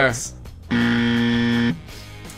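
Game-show 'wrong answer' buzzer sound effect: one flat, steady buzz lasting about a second, starting just under a second in, marking an incorrect guess.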